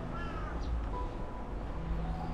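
A crow cawing, faint, near the start, over a low steady rumble.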